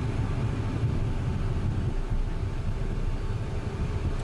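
Cessna Citation M2 business jet taxiing with its two Williams FJ44 turbofans at idle, heard inside the cockpit as a steady low rumble with faint steady tones above it.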